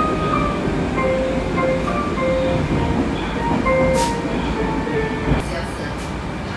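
Baku metro in-car announcement melody for Khalglar Dostlugu station: a short electronic tune of clear notes played over the train's speakers. It runs from about a second in to about five seconds, over the steady rumble of the moving metro train.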